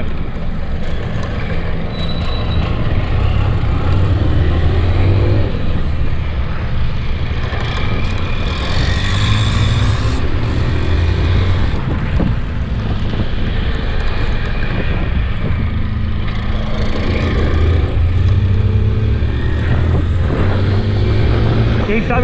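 Motorcycle engine running on the move, the throttle opening and easing off by turns, with wind and road noise over it.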